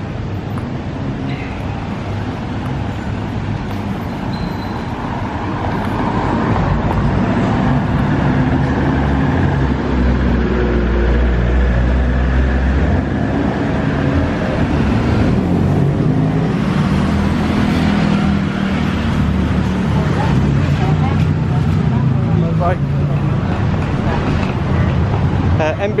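Street traffic: motor vehicle engines running and passing close by, getting louder from about six seconds in, with a heavy low engine rumble near the middle.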